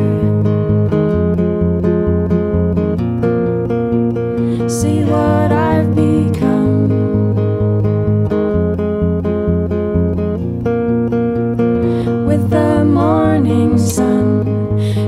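Folk song played live on two guitars, mostly acoustic guitar, strummed steadily through an instrumental passage with no lyrics. Brief wordless vocal lines come in about five seconds in and again near the end.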